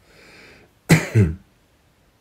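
A man draws a breath, then clears his throat in two short bursts about a second in.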